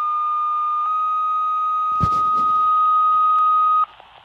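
Two-tone sequential page tones over a Motorola Minitor V pager's speaker: one steady tone for about a second, then a second tone at a slightly different pitch held for about three seconds, with radio hiss behind. A light knock sounds about halfway through.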